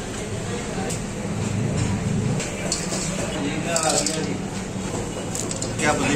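Indistinct voices in the background over a steady low hum, with a few faint clicks.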